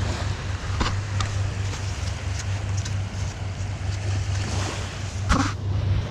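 Small waves washing in at the water's edge and wind on the microphone, under a steady low hum, with a few short sharp clicks; the strongest click comes about five seconds in.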